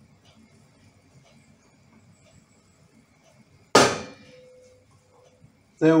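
Soup in a stainless steel pot on a gas hob faintly heating as it comes up to the boil, then a single sharp metallic clang, the loudest sound, a little before four seconds in, ringing briefly as it dies away.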